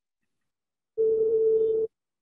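A steady single-pitched tone lasting just under a second, starting about a second in and cutting off abruptly: the soundtrack of a teaser video played through a shared screen on a video call.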